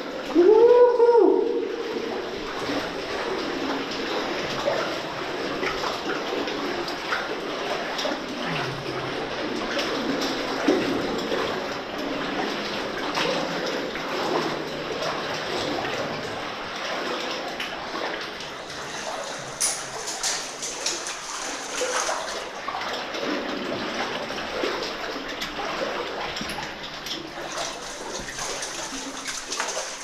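Legs wading through deep water in a flooded mine tunnel: continuous sloshing and splashing with small irregular splashes throughout. A short voiced call is heard right at the start.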